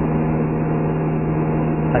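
Small propeller airplane's piston engine and propeller heard from inside the cockpit during flight: a steady, loud drone with a low hum.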